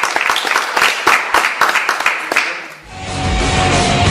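Audience applauding at the end of a talk, thinning out and dying away; about three seconds in, loud drum-heavy rock music starts abruptly.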